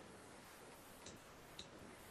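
Near silence with a couple of faint, short clicks, about a second in and again a little later, from a computer mouse.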